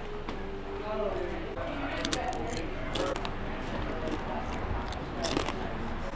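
Crispy fries being chewed close to a clip-on microphone, with a few sharp crunches about two to three seconds in and again near the end, over murmuring background voices.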